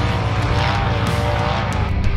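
Side-by-side UTV race car engine running at high revs, its pitch climbing and then easing off as it drives through a dirt section.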